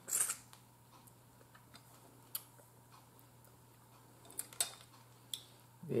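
Snow crab legs and a fork being handled: a few scattered sharp clicks and cracks of shell and metal, with two together right at the start and a small cluster near the end.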